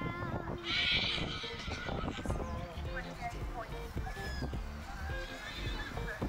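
A grey horse under saddle whinnying, one loud call about a second in, the calling of a horse excited to be out at an event, over background music.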